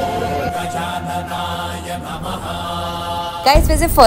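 Devotional mantra chanting in long held notes. Near the end it gives way abruptly to a louder low rumble.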